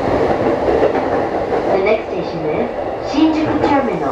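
Running noise of a Saikyo Line electric commuter train heard from on board: a steady rumble of wheels on rail, with clickety-clack over rail joints and points as it runs on the approach into Shinjuku.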